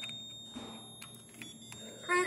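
A faint, steady high-pitched electronic whine, with a few soft clicks.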